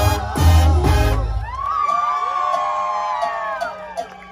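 A live banda's brass, tuba and drums play the final bars of a song and stop about a second in; then the crowd cheers and whoops.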